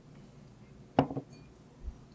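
A beer glass set down on a wooden table: a short knock about a second in, followed by a couple of smaller taps.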